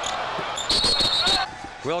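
Basketball game court sounds: a ball bouncing on the hardwood amid arena noise, with a steady high shrill tone lasting under a second near the middle.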